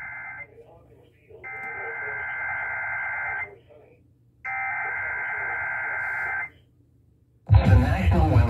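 Emergency Alert System SAME header: three bursts of rapid two-tone digital data, each about two seconds long with a pause of about a second between them. The first burst is already under way at the start. A broadcast voice begins reading the alert near the end.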